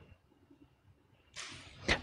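A pause with near silence, then a short, airy breath drawn in near the end of the pause.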